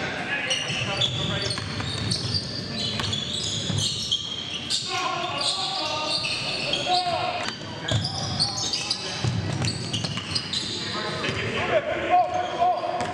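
Live pickup-style basketball game in a gymnasium: a basketball bouncing on a hardwood floor, sneakers squeaking in many short, high-pitched chirps, and players' voices, all echoing in the large hall.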